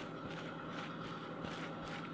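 Table knife spreading butter on a slice of bread: faint, quick scraping strokes, about four a second, over a steady faint hum.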